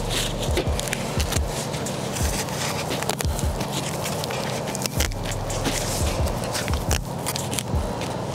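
Foam sill seal crinkling and crackling as it is unrolled off the roll and pressed down along a concrete block wall, with many small clicks and scrapes.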